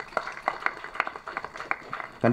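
Scattered hand clapping from an audience: a run of separate, irregular claps, several a second.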